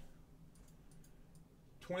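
A few faint clicks of a computer mouse as on-screen text is selected.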